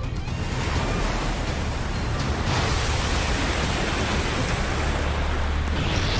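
Anime sound effect of rushing titan steam: a dense rushing noise that swells in over the first second, with a hiss joining about two and a half seconds in, over a steady deep rumble.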